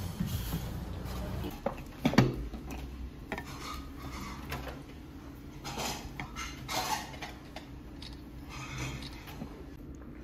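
Tableware sounds: dishes and metal cutlery knocking and clinking at a table, with one sharp clatter about two seconds in.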